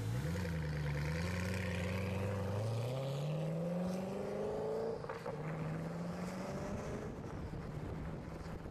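Koenigsegg Agera RS's twin-turbo V8 accelerating hard, its note climbing steadily in pitch for about five seconds, then breaking and dropping at an upshift before running on steadily.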